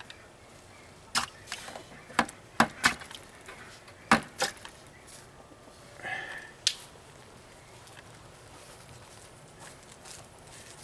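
Sharp, irregular knocks from an open buckshot mold being rapped to free freshly cast lead pellets, which drop into a bucket of water. There are about seven strikes, several in quick pairs, all in the first seven seconds.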